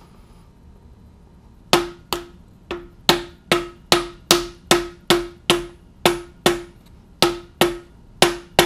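Steady hammer blows, about two and a half a second, on a wooden-handled driver held against the crankshaft damper pulley of a 2004 MINI Cooper S R53 engine, driving the pulley onto the crank nose. The blows start about two seconds in, each a sharp knock with a brief ring.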